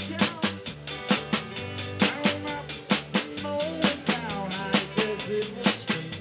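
A live band playing with a steady drum-kit beat, with electric guitars and an accordion.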